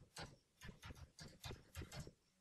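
Computer keyboard typing: a quick, uneven run of faint keystroke clicks as a word is typed.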